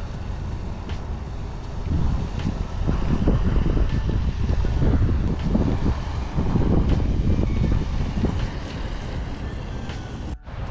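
Wind buffeting the microphone: a low, uneven rumble that swells and eases with the gusts, strongest in the middle of the stretch.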